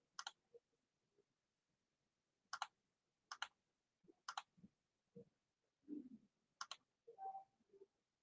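About five faint, sharp single clicks of a computer mouse, spaced a second or more apart, with near silence between them.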